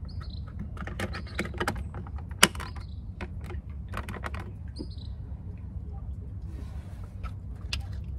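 A compass trim ring being twisted and pressed onto the compass housing in a wooden bulkhead: irregular small clicks and knocks, with one sharp click about two and a half seconds in, over a steady low hum.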